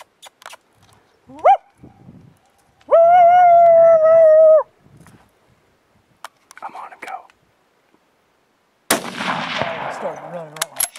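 A short rising call about a second and a half in, then a loud call held on one steady pitch for about a second and a half. About nine seconds in comes a single loud gunshot that trails off as it rings out.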